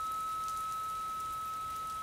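A single unbroken high-pitched electronic beep tone, held at one steady pitch, over a faint even hiss.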